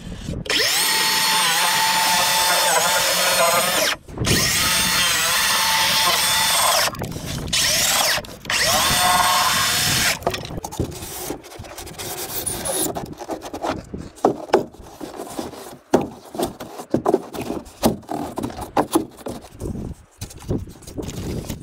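DeWalt circular saw cutting through an expanded-polystyrene insulated concrete form block, its motor whining in three or four runs over about the first ten seconds. After that come scattered knocks and clicks.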